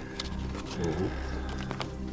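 Faint crackles of stiff old parchment pages being handled, over a steady low hum, with a man's brief 'oh' of wonder about a second in.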